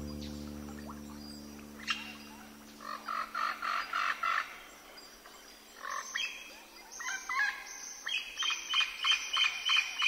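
A piano chord fades out over the first couple of seconds, then a nature-sounds layer of animal calls follows: several runs of short, quickly repeated calls, the loudest in the second half.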